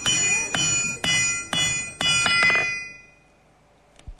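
Hammer beating a cold iron rod on a small anvil to heat it, about two blows a second, each stroke leaving a bright bell-like metallic ring. The hammering stops about three seconds in.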